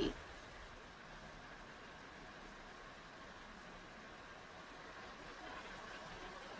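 Faint steady hiss of background room tone, with no distinct sound event.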